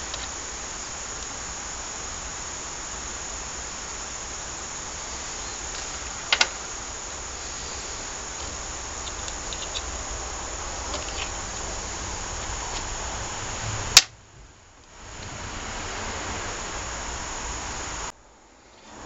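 Steady background hiss, with faint clicks of a steel O-ring pick working at a pressure washer pump's piston housing to pry out its seals. A sharper click comes about a third of the way in, and a loud sharp click about 14 seconds in, after which the sound briefly drops almost out.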